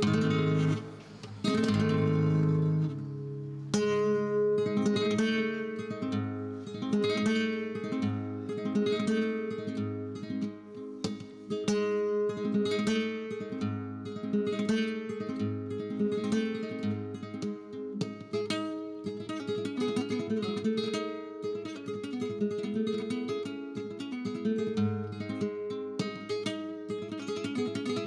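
Solo flamenco guitar playing the introduction to a soleá de Alcalá, with strummed chords and runs of picked notes.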